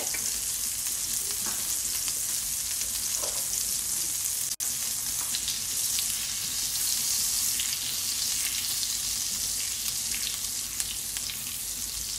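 A stick of garlic butter sizzling as it melts in a hot non-stick wok, a steady crackling hiss. A wooden spoon pushes the butter around in the pan. The sound drops out for an instant a little before halfway.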